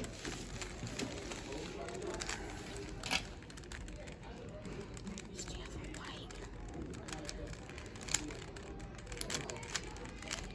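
A 3x3 Rubik's cube being turned quickly by hand: scattered plastic clicks and clacks as the layers turn, with a sharper click about three seconds in and another around eight seconds.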